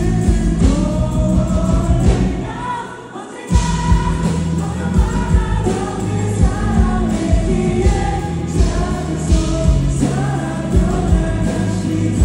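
Live song: a male vocalist singing into a microphone over his own acoustic guitar, with a band behind him. About two to three seconds in, the music thins out briefly, then the full band comes back in at once.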